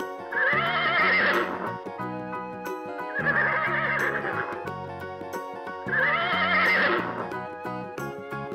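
A horse whinnying three times, each whinny about a second and a half long with a quavering, shaking pitch, over background music.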